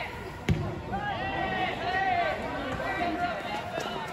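A football kicked once with a sharp thump about half a second in, followed by players shouting and calling to each other on the pitch.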